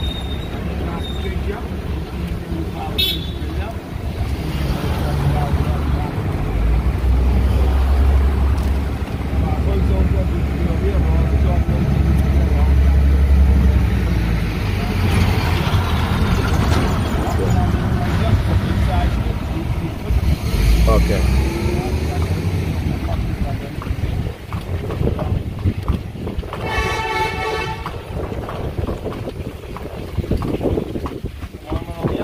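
Street traffic heard from a moving horse-drawn carriage: a truck's engine rumbling close alongside for several seconds, then a vehicle horn tooting once for about a second and a half near the end.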